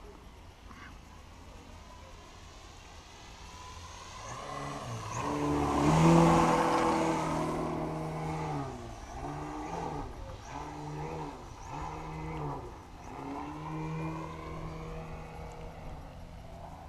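Gas engine of a large-scale radio-controlled Extra 330 aerobatic plane. It is faint at first, then grows to its loudest in a close pass about six seconds in. A run of throttle bursts follows, the pitch rising and falling about once a second.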